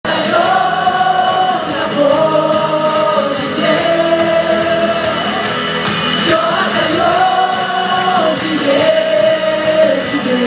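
Live worship song: singers on microphones singing over musical accompaniment, with long held notes in each phrase.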